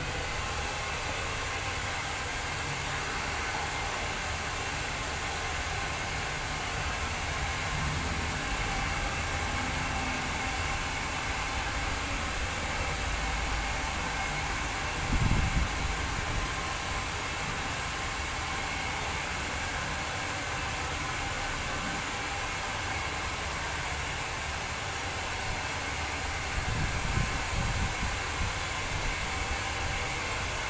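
Handheld hair dryer running steadily, a rushing hiss of blown air as hair is blow-dried; it comes on at the very start. Brief low rumbles about halfway through and near the end.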